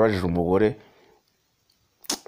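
A man's voice speaking, breaking off less than a second in, followed by near silence.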